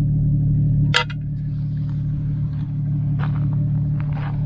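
A rusted square tin can dropped onto desert gravel, one sharp metallic clink about a second in, over a steady low rumble.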